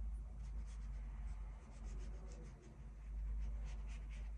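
A watercolour brush stroking across sketchbook paper: a run of soft, short scratchy strokes over a low steady hum.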